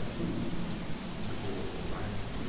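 A steady rushing noise like heavy hiss or rain, with a faint low murmur underneath.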